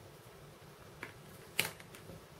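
Two small clicks about half a second apart, the second louder: a paintbrush being set down on the desk while a small plastic model is handled.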